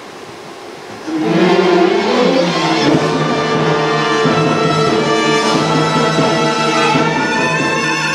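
Symphony orchestra coming in strongly about a second in with a rising phrase, then playing full, sustained chords.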